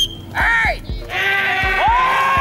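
A high voice holds two drawn-out calls that rise and fall in pitch, first a short one about half a second in, then a long one from about a second in, over repeated low thuds.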